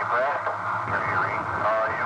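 A man's voice over a radio link, thin and narrow-sounding with words that cannot be made out, over a steady low hum.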